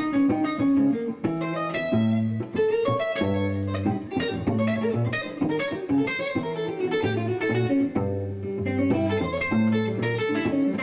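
Electric guitar playing quick single-note lines drawn from the diminished scale, with low bass notes held underneath.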